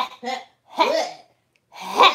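A woman making playful vocal sound effects with her mouth: a few short voiced bursts, then a longer one that starts with a hiss near the end.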